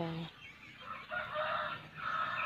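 A rooster crowing once in the background: a single drawn-out crow that begins about half a second in and lasts about a second and a half.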